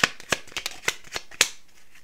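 A deck of tarot cards being shuffled by hand: a run of short, sharp, irregular card snaps, about four or five a second, the loudest right at the start.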